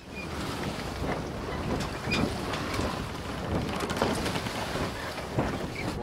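Wind buffeting the microphone over outdoor harbour ambience, with a few faint clicks and knocks scattered through.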